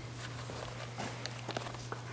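Soft footsteps and a few small knocks as a person walks away from a table, over a steady low hum.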